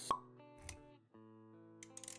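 Sound effects of an animated intro: a sharp pop just after the start, a second, softer hit a little later, then quiet background music with held notes.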